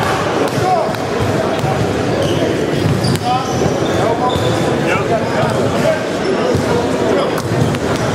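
Basketballs bouncing on a hardwood gym court, with a few sharp impacts, over the steady chatter and calls of players and onlookers.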